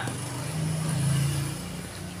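Motor vehicle engine passing: a low hum that swells about half a second in and fades again near the end.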